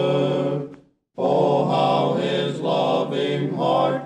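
Four-part men's gospel quartet singing a hymn, played from a vinyl LP record. A held chord fades out under a second in, then after a short silent breath all the voices come back in together on the next line.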